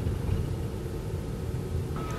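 Outdoor background noise: a steady low rumble with no distinct events.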